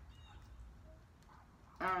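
A pause with only faint room tone, then a woman saying "um" near the end.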